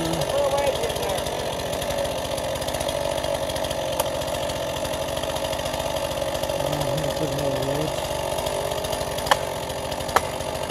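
Chainsaw running steadily while cutting into a leaning downed tree trunk, with faint voices underneath. There is a sharp tick about four seconds in and another near the end.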